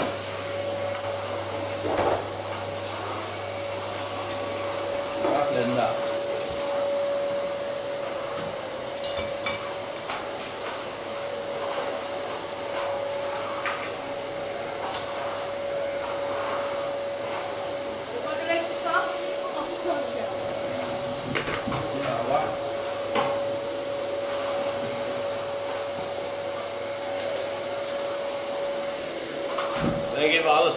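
Vacuum cleaner running steadily with an even, high motor whine, and a few short knocks and clatters in between.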